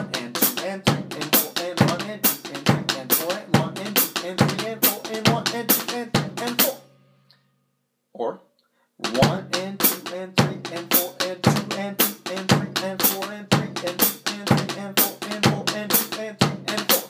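Drumsticks playing the single drag rudiment, grace-note drags and taps, on a rubber practice pad laid over a snare drum, over a steady bass drum quarter-note pulse. The playing stops about seven seconds in and starts again about two seconds later.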